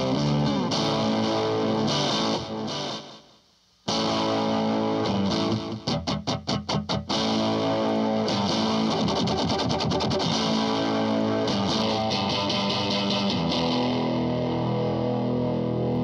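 Electric guitar on its neck pickup, played back through Cubase 6's VST Amp Rack modelling a Fender Deluxe amp with a fuzz pedal and a delay pedal: distorted, sustained notes and chords with echoes trailing after them. The playing breaks off briefly about three seconds in, and a quick run of short choppy notes comes around six seconds in.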